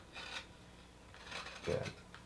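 A carving blade shaving cottonwood bark in short scraping strokes, one just after the start and another about a second and a half in.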